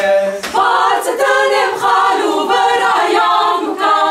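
Mixed choir of women and men singing a cappella, in phrases broken by short breaks.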